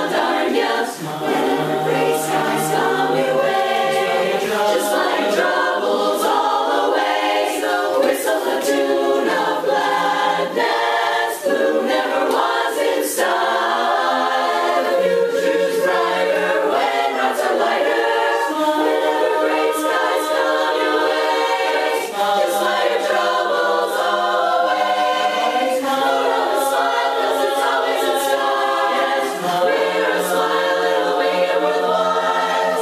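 A women's chorus singing a cappella in harmony, holding sustained chords.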